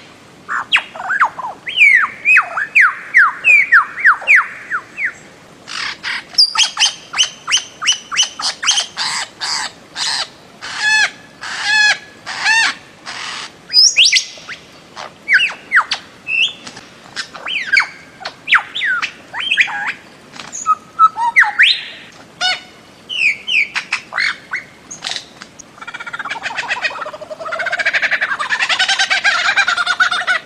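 Bird-of-paradise calls from a lure recording: repeated downward-sweeping whistled notes, then fast runs of sharp, squawking calls at about three or four a second. Near the end comes a dense, steady burst of overlapping calls.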